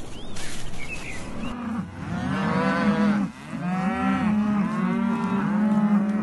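A herd of cattle lowing, with many overlapping moos starting about a second and a half in.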